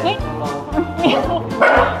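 A corgi barking sharply, loudest near the end, over background music.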